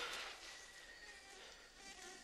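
Faint insects buzzing and chirring in a jungle at night, as a few thin steady tones over a low hiss.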